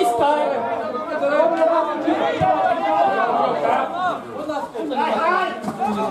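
Spectators' voices talking over one another, loud and close.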